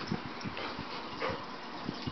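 Two dogs playing together, with a couple of short dog noises and soft thuds of their movement.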